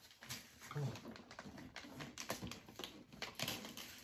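Gift wrapping being handled by hand: a run of faint, short paper crinkles and rustles as a gift bag and its paper are pulled open.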